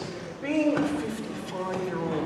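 Speech only: a person speaking lines, quieter than the surrounding dialogue.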